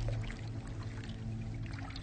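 Quiet intro music: a low sustained drone with scattered light, trickling, water-like ticks over it.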